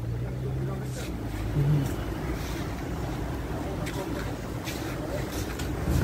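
A steady low rumble of vehicle noise, with a steady hum for about the first second and a half and a few faint clicks.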